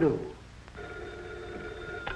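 Desk telephone bell ringing steadily, starting about a second in, an incoming call.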